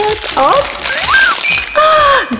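Crinkly plastic blind-bag packet rustling as it is torn open by hand, with a woman's wordless, sing-song voice over it. A high steady ringing tone joins near the end.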